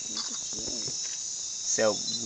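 A chorus of night insects buzzing in a steady, high-pitched drone, with faint voices beneath it.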